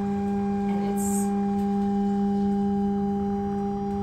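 A steady electrical hum, one low tone with its overtones, from the observatory's motorised telescope and dome equipment, with a brief hiss about a second in.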